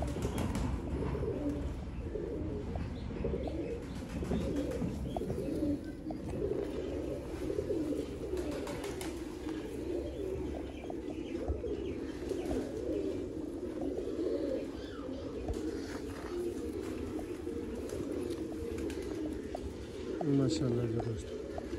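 Many domestic pigeons cooing together in a loft, a continuous overlapping chorus of low warbling coos, with a few brief faint rustles.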